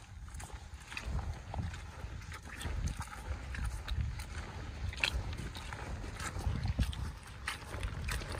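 Footsteps in boots on a wet, muddy path covered with fallen leaves: the squelch of mud and the crackle of wet leaves underfoot with each stride.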